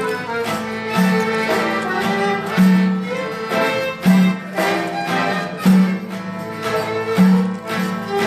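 Violin playing a lively Greek folk dance tune, with a low bass accompaniment that sounds a note about every second and a half.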